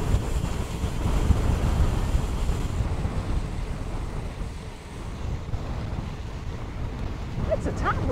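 Wind buffeting the microphone of a handlebar-mounted camera on a moving bicycle, a steady low rumble throughout. A voice starts in the last moment.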